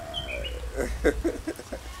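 A man laughing in a quick run of short bursts, with small bird chirps in the background.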